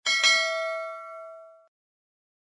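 Notification-bell sound effect of a YouTube subscribe-button animation, for the bell icon being pressed: a quick strike, then a bright bell ding about a quarter second in that rings for over a second and cuts off.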